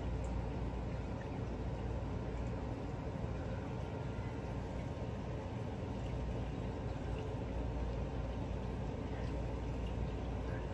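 Steady low background hum with a faint even hiss, without any distinct knocks or clicks.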